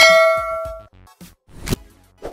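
A bright metallic ding that rings out for under a second, followed by two short clicks, the louder one near the end: the sound effects of an animated subscribe-and-bell end screen.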